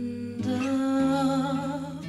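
A female voice sings a long wordless, wavering note, close to humming, coming in about half a second in over sustained acoustic guitar notes. The guitar's bass note changes about a second in.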